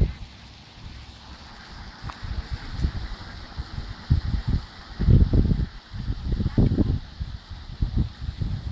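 Wind buffeting the microphone in irregular gusts of low rumble, strongest about five to seven seconds in.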